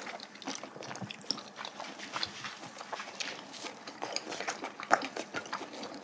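Close-miked eating sounds: chewing of stir-fried duck, with many small light clicks of chopsticks and metal tongs against bowls and the pan.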